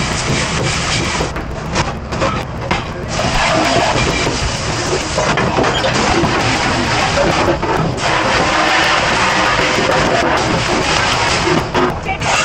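Commercial pre-rinse spray hosing water onto stainless steel stockpots and hotel pans, a steady loud hiss of water on metal, with pans clanking as they are handled. The spray eases off for a moment about two seconds in, then runs steadily again from about three seconds.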